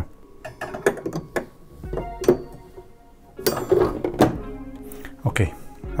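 Several sharp metal clicks and knocks as a stainless steel cup rest is fitted into the front of a Nespresso Momento 100 espresso machine, over quiet background music.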